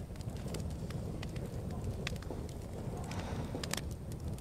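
Supermarket background with a steady low rumble and scattered, irregular sharp clicks and knocks from moving along the aisle with a handheld camera.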